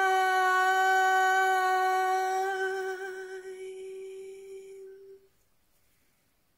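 A woman's unaccompanied voice holding the long final note of the song on one steady pitch, fading away about five seconds in.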